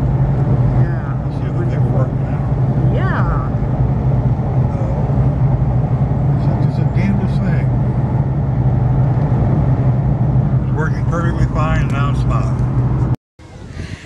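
Steady engine and road noise heard inside a moving car's cabin, a low even hum. It cuts off suddenly near the end.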